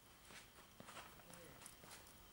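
Near silence, with a few faint clicks of a heavy steel chain and a small padlock being handled.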